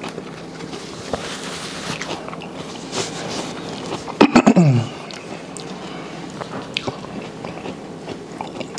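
Close-miked chewing and mouth sounds of someone eating seafood, with paper napkin rustling as hands are wiped. About four seconds in come a few sharp mouth clicks and a short hum that falls in pitch.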